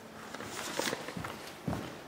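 Footsteps of a person walking, with two dull thuds about half a second apart in the second half and light clicks and rustling from a handheld camera before them.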